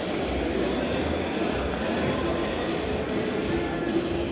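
Steady room noise in a hall: a continuous low rumble with a murmur of faint voices.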